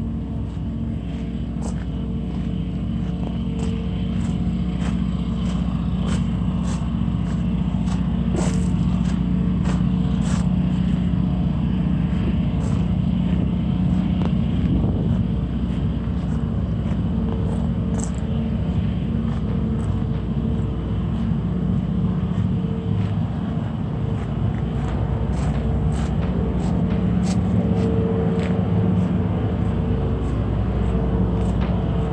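Ambient drone music: a steady, low rumbling drone with held tones, swelling slowly over the first few seconds, with scattered faint clicks.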